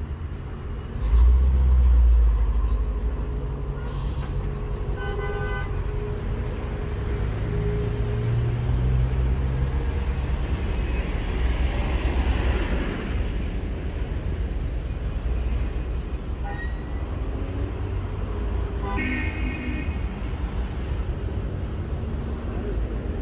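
Street traffic with vehicle engines running, and a deep rumble that is loudest in the first few seconds. Two short car horn toots sound, one about five seconds in and one near the end.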